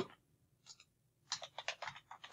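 Computer keyboard being typed on: two faint keystrokes a little over half a second in, then a quick run of about six keystrokes in the last second.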